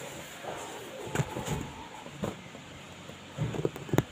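A cardboard carton being handled and moved about, with a few scattered knocks and scrapes against the box and a louder cluster of them near the end.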